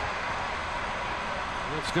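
Steady ballpark broadcast ambience, an even noise with no distinct events, before a man's commentary voice comes in near the end.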